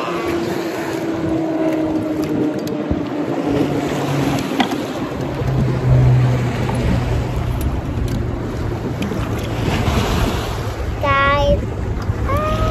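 Wind and choppy water around a fishing kayak, with a steady low drone underneath from about halfway. A child's voice sounds briefly near the end.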